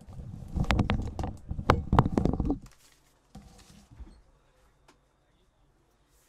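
Greyhounds galloping past on a sand track: a rush of rapid paw strikes with a few sharp clicks, fading about two and a half seconds in, then a few fainter scattered sounds.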